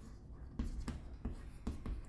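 White chalk writing on a chalkboard: a series of short, faint strokes a few tenths of a second apart as letters are written.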